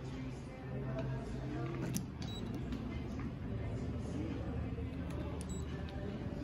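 Soft background music with faint voices under it, and a single sharp click about two seconds in.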